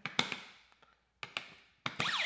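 A few short plastic clicks and taps as Snap Circuits parts and batteries are pressed into place on the board: two close together just after the start, two more a little past a second in, and one more near the end.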